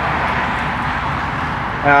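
Steady, even background noise with no distinct events, then a man's voice near the end.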